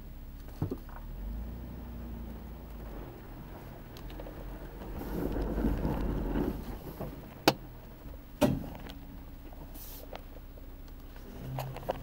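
SUV engine running low and steady off-road, swelling louder for a couple of seconds around the middle, with a few sharp knocks: one near the start and two about a second apart past the middle.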